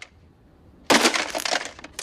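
A plastic flip-clock radio being smashed by a fist: after a short quiet, a loud burst of cracking and clattering breaking parts about a second in, lasting close to a second.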